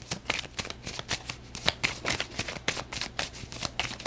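A deck of tarot cards shuffled in the hands: a quick, irregular patter of card clicks and flicks.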